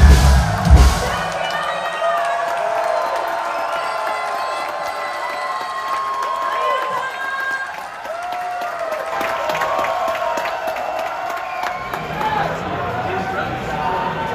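A live rock band's song ends with loud final drum and guitar hits about a second in. The concert crowd then cheers, whoops and shouts.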